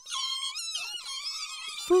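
Fox pups squeaking: several high, wavering squeaks overlapping one another.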